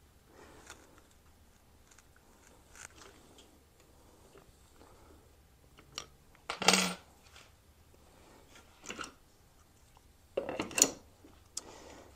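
Small clicks and light metallic clinks as a pistol grip is fitted onto an AR-15 lower receiver over the selector detent spring. There is a louder clatter about seven seconds in and a few sharper clicks near the end.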